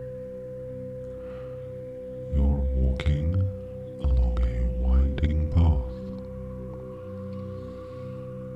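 Soft meditation background music: a steady, unbroken drone with one clear held tone and quieter lower tones beneath it.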